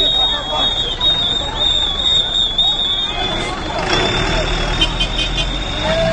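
City bus engine running as the bus passes close by, its low rumble growing in the second half, amid people's voices calling out. A steady high-pitched whine runs under it all.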